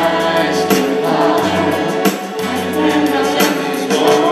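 Live gospel worship band playing: several voices singing together over electric bass, acoustic guitar and keyboard, with a steady beat.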